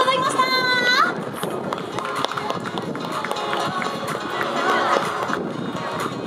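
A woman's high, drawn-out call through a microphone and PA, rising in pitch at the end and stopping about a second in. After it comes the steady background of an outdoor crowd with faint music.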